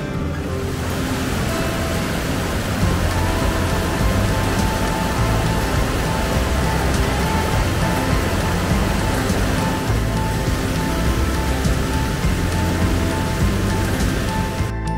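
Background music over the steady rush of McDonald Falls, water pouring over rock ledges.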